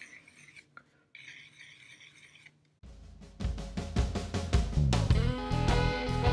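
Faint scratching of a graphite pencil on watercolor paper, then background music cuts in about three seconds in, with a drum kit and a steady bass beat that is much louder than the pencil.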